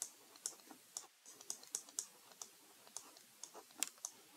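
Faint, irregular light clicks and taps of a stylus on a tablet as handwriting is written, about three or four a second, the sharpest just before the end.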